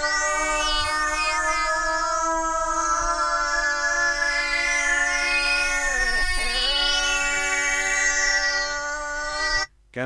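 A time-stretched sample played back in layers in Reason's NN-XT sampler: a sustained, pitched electronic drone that dips in pitch and comes back up past the middle, then cuts off suddenly near the end. It sounds like a wailing cat.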